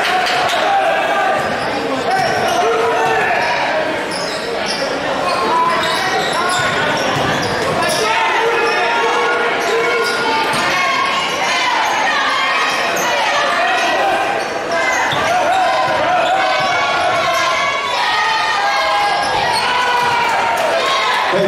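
A basketball being dribbled on a hardwood gym floor, with many overlapping voices from the crowd in the stands echoing through the large gym.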